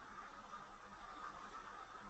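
Faint steady background hiss with a low hum: room tone picked up by the recording microphone, with no distinct events.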